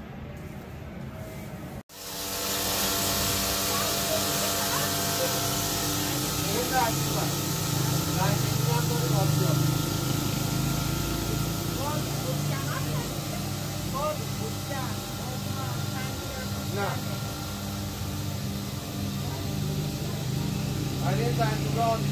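Electric seed mill running steadily, grinding sesame seeds into paste: a constant motor hum with several steady tones. It starts abruptly about two seconds in, with faint voices in the background.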